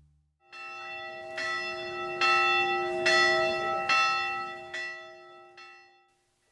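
A bell tolling: about seven strokes a little under a second apart, each ringing on. The strokes are loudest in the middle and fade away near the end.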